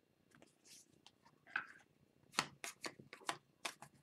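Trading cards being handled by hand: a quick run of sharp, faint clicks and flicks in the second half as a small stack of cards is squared up and sorted.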